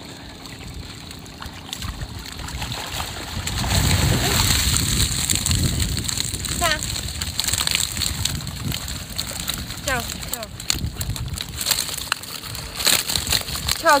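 Water sloshing and splashing as a mesh keepnet full of fish is hauled out of the lake. It builds about two seconds in and is loudest for the next several seconds.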